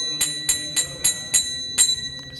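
Kartals, small brass hand cymbals, struck together in a steady rhythm, about three strikes a second, each strike ringing briefly with a bright high tone.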